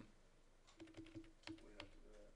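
Faint, scattered clicks from a computer mouse and keyboard, several in the second half, over quiet room tone.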